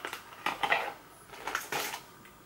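A glass candle jar being slid out of its cardboard box and handled, giving a few short clinks and scrapes of glass and card.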